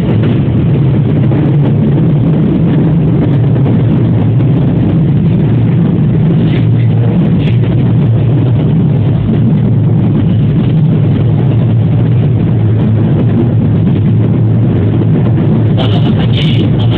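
JR West 207 series electric train running along the line, heard from behind the driver's cab: a loud, steady low rumble of the moving train, muffled by a mobile phone's microphone.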